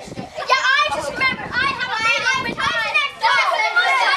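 Several children's voices talking and calling out over one another, high-pitched and excited, with no clear words.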